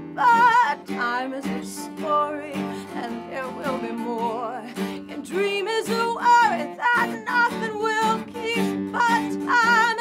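A woman singing a slow melody with vibrato, accompanied by an acoustic guitar.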